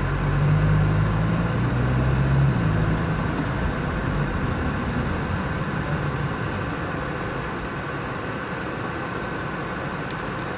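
Honda Fit Hybrid with an aftermarket Kakimoto Kai muffler driving: a low exhaust drone for the first two and a half seconds, then fading into a steady road rumble that slowly quietens.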